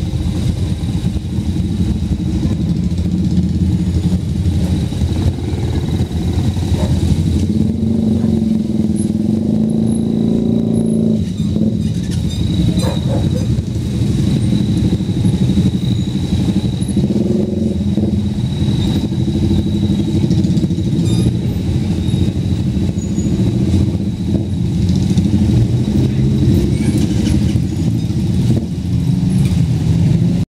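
Many small motorcycle and motorcycle-tricycle engines running at low speed as they crawl past in a dense line, a loud, steady blend of engine noise.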